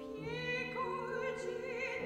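Operatic soprano singing with vibrato, accompanied by grand piano.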